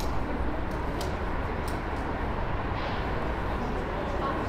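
City street ambience: a steady low rumble of traffic. A few light clicks fall in the first two seconds, and a brief hiss comes a little before three seconds in.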